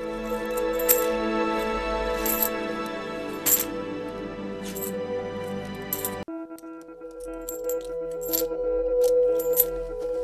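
Background music of sustained tones, with coin-dropping clinks, about a dozen sharp metallic chinks at irregular spacing. The sound cuts abruptly a little past six seconds in and carries on straight after.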